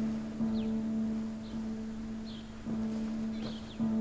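Soft background score: a low held note that swells again every second or so, with faint short high chirps above it.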